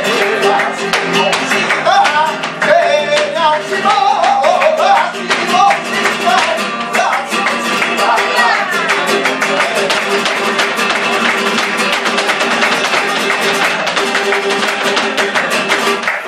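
Live flamenco por alegrías: a Spanish guitar playing with flamenco singing over it through the first half. Sharp hand-claps (palmas) and the dancer's heel-and-toe footwork strike more densely through the second half.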